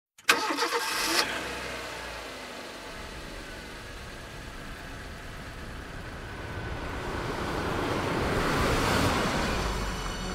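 Recorded car engine at the head of a rap track: it starts suddenly, loud for about a second, then runs on and grows steadily louder through the last few seconds.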